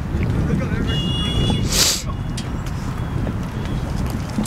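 Wind buffeting an outdoor microphone as a steady low rumble, with faint distant voices from the field. A faint high tone sounds about a second in, and a short hiss just before two seconds.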